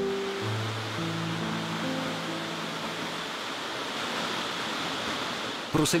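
Steady rush of a waterfall pouring into a pool. A few soft music notes die away in the first couple of seconds.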